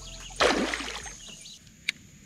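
A released largemouth bass splashing in the water beside a kayak as it swims off: one sudden splash about half a second in that fades away over about a second. A short click follows near the end.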